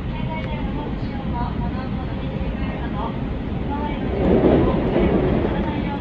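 Running noise of a JR Central Chuo Main Line commuter train heard from inside the carriage: a steady rumble of wheels on rails that swells louder for about a second and a half, starting about four seconds in.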